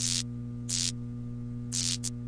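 Neon-sign sound effect: a steady electrical hum broken by three short crackles of static as the tubes flicker on, one at the start, one a little under a second in and one near the end.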